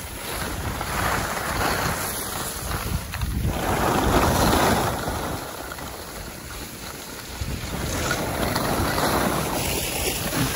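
Wind buffeting the microphone of a camera carried by a moving skier, with the hiss of skis sliding over packed snow swelling and fading in waves every few seconds.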